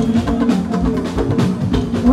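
Live Fuji band playing an instrumental stretch between vocal lines: drums and percussion keep a steady beat of about three thumps a second under bass and electric guitar.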